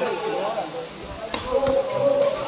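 A sepak takraw ball is kicked on the serve with one sharp smack a little past halfway, followed by a couple of lighter clicks. Men's voices call out in the hall around it.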